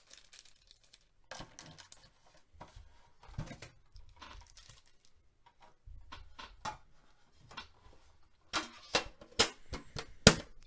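Foil-wrapped hockey card packs being handled and stacked on a table: scattered soft crinkles and light taps, with a louder cluster of crinkles and clicks near the end.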